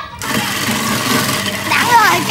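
Electric ice shaver running and grinding ice into a metal bowl, a steady rasping noise over a motor hum that starts just after the beginning. Voices come in near the end.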